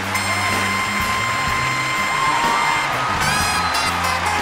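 Live band music: a long held high note for about three seconds, then a brief upward glide, over a steady bass line.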